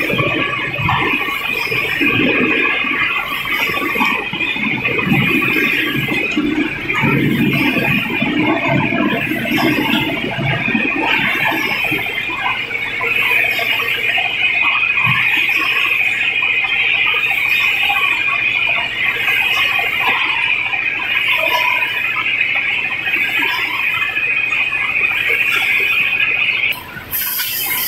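Vacuum pouch packing line running: a steady high-pitched machine whine, with a short hiss repeating about every one and a half seconds. Irregular handling clatter of pouches and trays runs under it during the first half.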